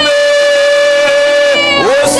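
A man singing into a microphone, holding one long steady note, which bends and breaks off near the end as the next phrase begins.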